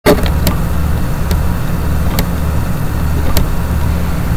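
A steady low hum with several sharp clicks scattered through it.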